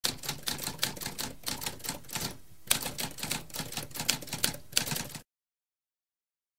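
Typewriter keys being struck in a fast, uneven run of clicks, with a brief pause about halfway through, stopping abruptly a little after five seconds.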